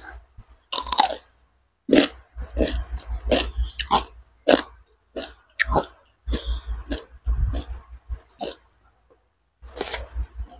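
Close-miked crisp bite into a raw cucumber slice about a second in, followed by steady chewing with repeated wet crunches. Another sharp crunch comes just before the end.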